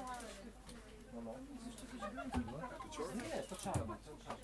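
Voices making wordless sounds that slide up and down in pitch, busiest in the second half.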